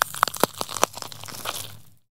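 Crackling sound effect under the channel's logo card: a run of irregular sharp clicks and crunches over a hiss, thinning out and fading away near the end.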